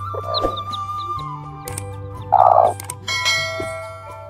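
Domestic hen giving two short calls over steady background music, the louder one about two and a half seconds in. Brief high peeps from newly hatched chicks come near the start.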